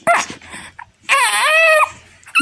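Infant vocalizing: a short sudden sound at the very start, then about a second in one long, high, wavering squeal.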